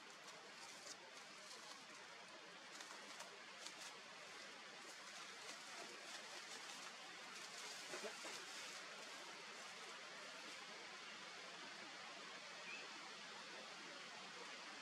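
Near silence: a faint, steady outdoor hiss, with scattered faint high-pitched ticks through roughly the first nine seconds.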